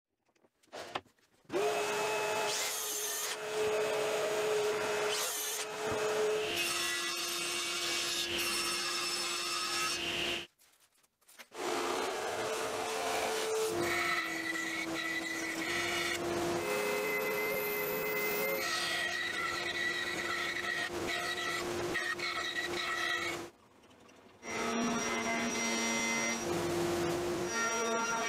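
Woodworking power tools cutting plywood in a run of short clips: a band saw and a router table, each running with a steady motor hum that shifts in pitch from one clip to the next. The sound drops out briefly twice, about ten seconds in and again near the end.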